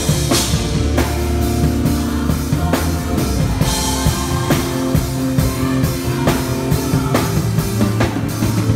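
Odery acoustic drum kit with Orion cymbals played along with a worship song's band backing: a steady groove of kick, snare and cymbals over sustained bass and chord tones, with cymbal crashes about half a second in and again around four seconds.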